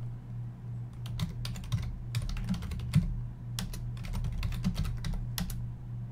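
Typing on a computer keyboard: irregular clusters of key clicks starting about a second in and stopping shortly before the end.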